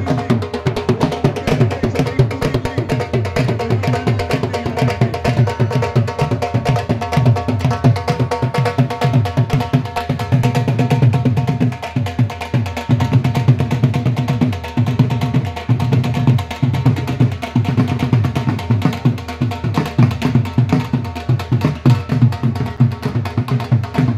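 Several double-headed dhol drums beaten with sticks in a fast, continuous, driving rhythm.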